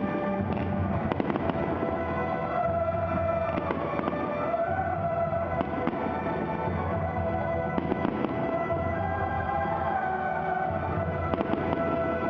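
Aerial firework shells bursting: repeated sharp bangs and crackles at irregular intervals throughout, over music.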